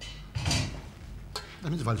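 Metal tongs knocking and scraping against a steel pot and frying pan as cooked penne is lifted from the pasta water into the tomato sauce. There is a short scrape about half a second in and a sharp click a little after the middle.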